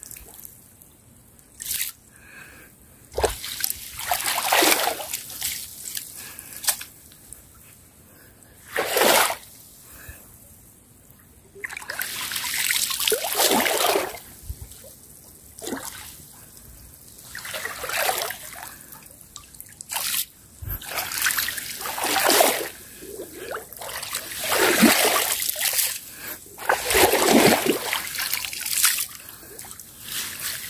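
Shallow water splashing and sloshing in a series of separate swishes as a long stick is pushed and dragged through it.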